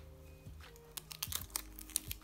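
Paper and clear sticky tape being handled and pressed while taping the sides of a paper squishy. A quick run of sharp crinkly clicks comes in the second half, over faint background music.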